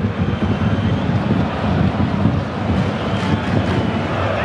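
Loud, steady low rumbling noise with no distinct events: background din at a football pitch picked up by the camera's microphone.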